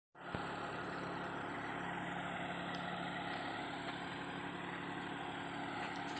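Steady outdoor ambience: an even hiss with a constant high-pitched insect drone over it and a faint low hum beneath.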